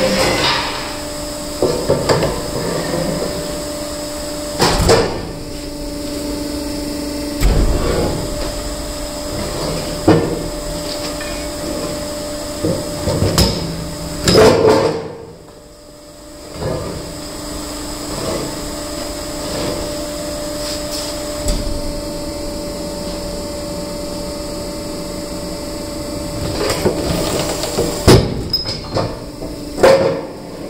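Steinex hydraulic stone splitter running with a steady two-tone hum, as a granite block is shoved over the steel table and split. Hard knocks, scrapes and cracks of stone on steel come every few seconds. The hum drops out briefly about halfway.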